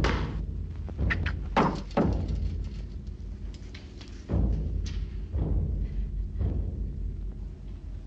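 Dramatic film-score percussion: about six heavy drum strikes at uneven intervals, each ringing out, over a low sustained note.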